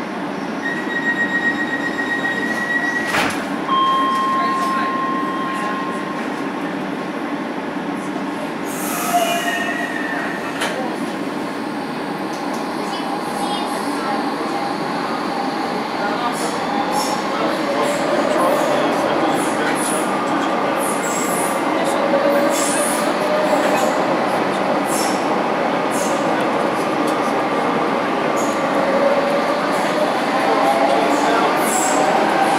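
Docklands Light Railway B2007 Stock train running through a tunnel, heard inside the car: a steady rumble of wheels on rail. Brief thin steady tones sound in the first few seconds, and a wavering wheel squeal runs through the second half.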